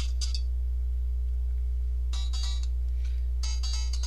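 Snippets of songs playing from a Nokia 5310 XpressMusic phone's speaker, stopping and starting as tracks are skipped: one cuts off about half a second in, another plays briefly about two seconds in, and a third starts near the end. A steady low electrical hum runs underneath.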